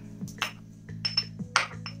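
Stone pestle pounding and crushing allspice berries (pimentos) in a stone mortar: a quick, uneven series of sharp clinks and knocks, some with a brief ringing. Background music plays underneath.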